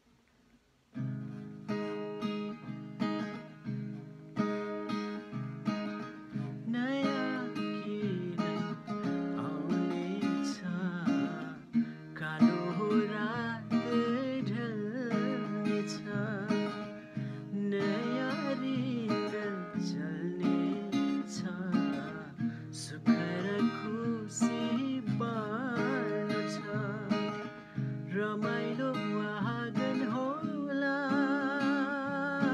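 Grason acoustic guitar strummed and picked in chords, starting about a second in, with a man's voice singing the melody over it through much of the passage.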